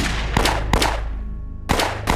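Gunshots in a staged gunfight: a few sharp shots with echoing tails, one about a third of a second in and one at about three-quarters of a second, then a louder shot near the end, over a low steady hum.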